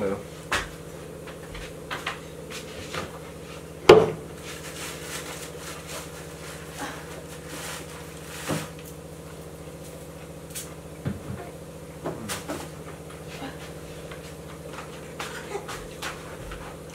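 Quiet room with a steady low hum, broken by scattered light knocks and clicks of household handling, the loudest about four seconds in.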